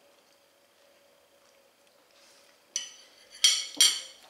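A metal spoon clinking against a china plate three times in quick succession near the end, as it is set down; before that, only a faint steady hum.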